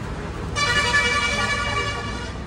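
A vehicle horn sounding one long steady honk that starts about half a second in, over a low steady traffic rumble.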